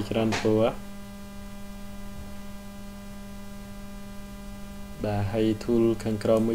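Steady electrical hum, a low buzzing tone with a row of overtones, carried by the recording itself. A voice speaks briefly at the start and again about five seconds in.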